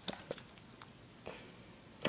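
A few faint clicks and light handling noise from a Sony HDR-XR160 camcorder being handled, its power button pressed with no battery fitted, so it stays dead.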